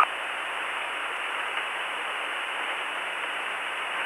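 Steady static hiss of an open radio voice channel between transmissions, thin and band-limited like the speech around it.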